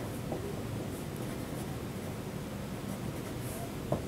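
Felt-tip Sharpie marker writing on paper: faint, short scratchy strokes as letters are written, with a short tap near the end.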